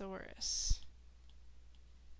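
A stylus knocking once on a tablet during handwriting on its screen: a single short, low knock about two-thirds of a second in. It comes right after a brief murmured word and a soft hiss, and low room tone follows.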